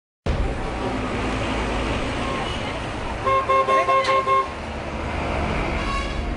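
Busy street traffic noise, with a vehicle horn tooting about six times in quick succession a little past the middle.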